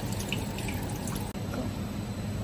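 Electronic bidet seat in front-wash mode, water from the extended nozzle spattering and dripping in the toilet bowl over a low steady hum. The sound cuts off abruptly a little over a second in, leaving the hum.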